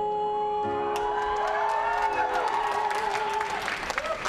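A man holds a long sung note over live keyboard chords while audience applause and cheering start about a second in and build. The held note stops shortly before the end, leaving the applause.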